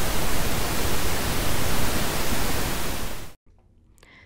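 Digitally generated pink noise: a steady hiss spread across all pitches, with a stronger bass than white noise. It cuts off about three and a half seconds in.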